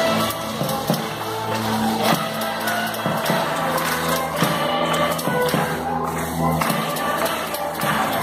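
Orchestra of violins and other strings playing, sustained low notes under a melody, with a steady beat of light percussive strokes.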